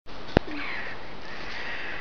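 A toddler drinking from a plastic sippy cup, with faint breathy sipping noises over a steady background hiss. A single sharp click comes about a third of a second in.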